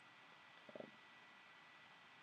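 Near silence: room tone, with a brief, faint spoken "uh" a little under a second in.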